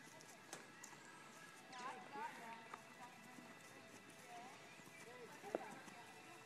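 Faint hoof steps of a horse moving on grass, with faint voices. A single sharp click comes near the end.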